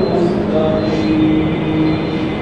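A man's voice chanting in long, drawn-out notes, one held for nearly a second about halfway through, over the steady murmur of a crowded prayer hall.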